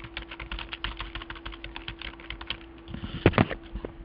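Typing on a computer keyboard: a quick run of keystrokes, then a few louder strokes near the end, over a faint steady hum.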